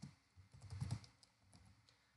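Computer keyboard typing: a quick, faint run of keystrokes, then a few lighter taps near the end.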